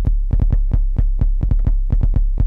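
Elektron Model:Samples drum samples played by finger drumming on Akai MPK Mini pads: rapid hits, several a second, in quick rolls over a long, low bass note.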